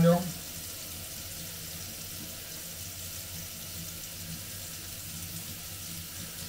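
Kitchen tap running steadily into a stainless-steel sink, a faint even hiss of water.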